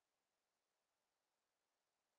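Near silence: only a very faint, steady hiss from the recording.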